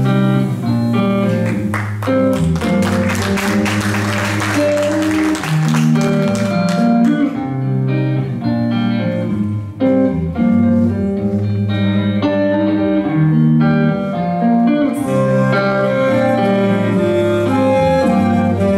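A progressive rock-jazz quintet playing live: electric guitar, saxophone, flute, electric bass and drum kit. For the first seven seconds or so, a bright, splashy high layer of cymbal strokes rides over the band, then it thins out while the bass line and melody carry on.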